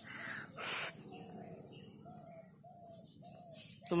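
A bird calling from the trees: five short, even notes, each falling slightly, about half a second apart. Two brief breathy puffs close to the microphone come just before them.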